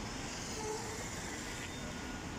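City street traffic noise, with a car driving slowly past close by: a steady, even hum with no sharp rise or fall.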